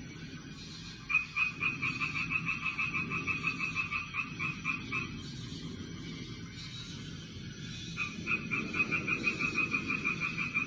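A frog calling in a rapid pulsed trill of about six pulses a second. It comes in two calls: one of about four seconds starting a second in, and another starting near the end. A low steady hum runs underneath.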